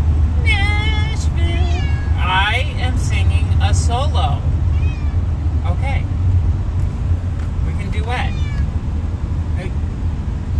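A cat meowing repeatedly inside a moving car, several drawn-out meows that rise and fall in pitch, most of them in the first half. Under them runs the steady low drone of the car driving on the highway.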